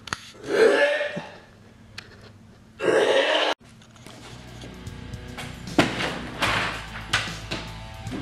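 A man gagging and retching in two loud bursts, the second cut off abruptly, after swallowing a raw egg. Quieter background music follows from about four seconds in.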